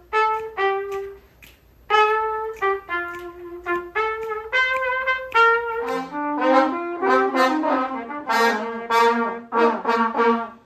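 One trumpet playing short phrases of separate notes. About six seconds in, several trumpets play together, their notes overlapping.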